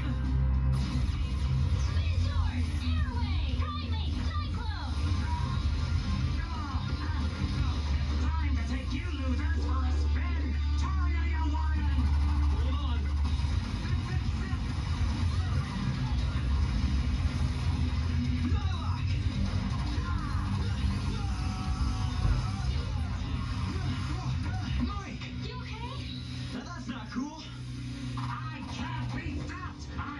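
Television audio of a fight scene, played through a TV's speaker: action background music with shouting voices and fight sound effects. A heavy bass drone runs under the first half.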